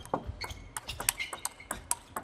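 Table tennis rally: a quick run of sharp clicks as the ball strikes the rackets and the table, several a second.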